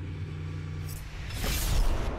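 NASCAR Cup car V8 engines: a steady engine drone heard on the in-car camera, then a louder rush of race cars going by that builds in the second half.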